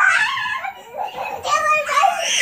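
Young children squealing and shrieking, high-pitched cries that rise and fall in pitch, with a short lull about halfway through.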